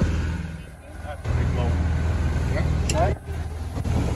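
Boat engine running with a steady low drone under indistinct voices; the drone dips away briefly about a second in and again near three seconds.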